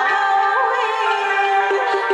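A woman singing a traditional Vietnamese song into a microphone, her long held notes ornamented with bends and wavers, over steady instrumental accompaniment.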